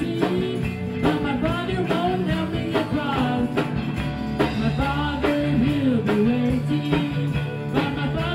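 Live amplified gospel song: women's voices singing the melody together over electric keyboard and guitar, with a steady beat.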